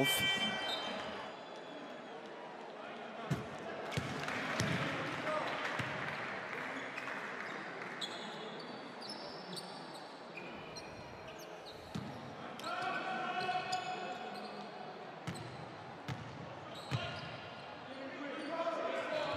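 A basketball bouncing a few times on a hardwood court, each bounce a sharp thud over the hall's steady background noise, with faint voices around it.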